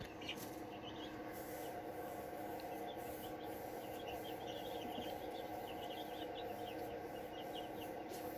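Faint background ambience: a steady low hum with many small, scattered high chirps.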